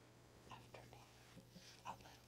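A woman whispering softly in short phrases, over a faint steady low hum.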